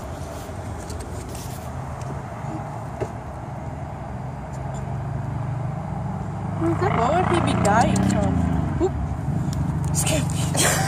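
A motor vehicle's engine rumbling steadily on the road close by, growing louder past the middle as it comes nearer. Brief murmured voices and laughter come in near the end.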